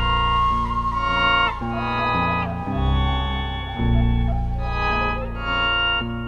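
Improvised music led by an electric archtop guitar through effects: low sustained notes that change about once a second, with a held higher tone running above them.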